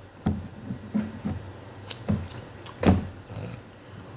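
A man gulping beer from a pint glass: a series of short swallows, the loudest about three seconds in.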